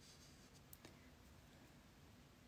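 Faint scratch of a large bristle brush stroking oil paint onto the painting surface, with two light ticks just under a second in, over a quiet room hum.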